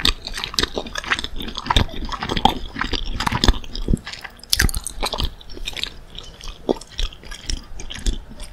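Close-miked crunchy chewing and biting of a crispy breaded chicken nugget, a dense run of irregular crackles.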